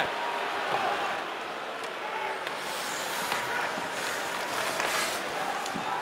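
Hockey arena ambience: a steady crowd murmur, with skate blades scraping the ice and a few sharp clicks of sticks and puck.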